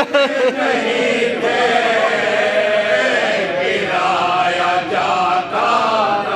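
Group of men chanting an Urdu marsiya (elegy) together: a lead reciter with supporting voices in unison, holding long, wavering lines.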